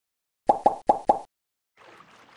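Four quick wet plops in a row, a cartoon sound effect, starting about half a second in.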